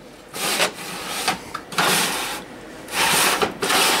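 A metal drawer of a steel tool cabinet dragged out in three scraping pulls, metal sliding on metal, with the reamers and cutters inside shifting.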